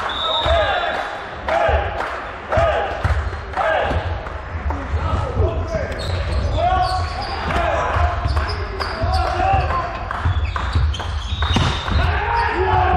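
Indoor volleyball being played: the ball is served and struck again and again in a rally, each hit a sharp smack, with players calling out, all echoing in a large sports hall.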